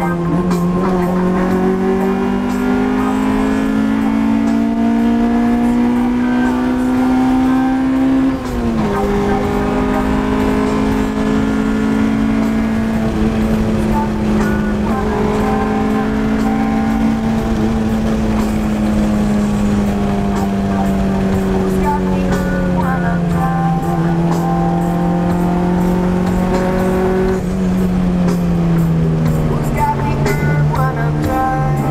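1999 Honda Civic's engine heard from inside the cabin while driving, its pitch climbing steadily under acceleration and then dropping suddenly at a gear change about eight seconds in. After that it runs at a steadier pitch that sags and rises again, then falls off near the end as the car slows.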